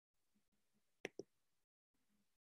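Near silence broken by two quick clicks about a second in, a fraction of a second apart, as a presentation slide is advanced on a computer.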